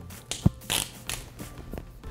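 Thin film liner being peeled off a 3M adhesive pad on a wall: a short rustle of peeling with a sharp tick about half a second in, then a few faint ticks, over soft background music.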